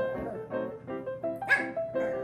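Upbeat background music with a bouncy stepping melody of short notes, and a puppy giving one short, sharp, high yip about one and a half seconds in.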